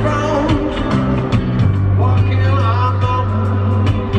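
Live rock band music played through a stadium PA, led by a sustained electric bass line with guitar and drums, recorded from the audience.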